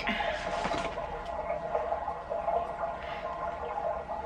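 Bubbling sound from a baby monitor running steadily, the noise the monitor makes when the baby moves.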